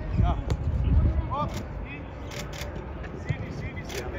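Football training ambience: several sharp thuds of footballs being kicked, with short shouts of players and coaches across the pitch and a low rumble near the start.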